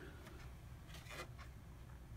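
Faint rustling and light brushing of a folded cardstock card being handled and lifted off a plastic scoring board, a few soft scrapes over a low steady hum.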